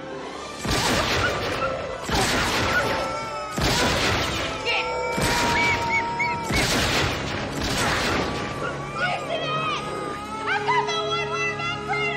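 Film soundtrack: about six loud bangs roughly a second and a half apart, over music. Near the end come wavering, rising and falling cries.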